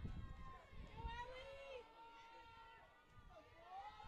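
Faint, distant voices from around the field, with low wind rumble on the microphone in about the first second.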